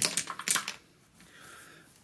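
Small flat board-game tokens clattering as they pour out of a cloth bag onto a table: a quick run of clicks that dies away within the first second.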